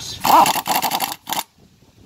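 Power impact wrench with a quarter-inch hex bit running a hex-socket bolt into a brake rotor's flange, only snugging it until it touches, not tightening it all the way. It runs in one burst of a bit over a second, then stops.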